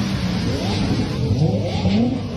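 Car engine revving as it accelerates past, its note rising in pitch several times.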